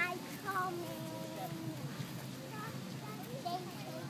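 A young child's faint voice in drawn-out, wavering sung notes, over steady outdoor background noise.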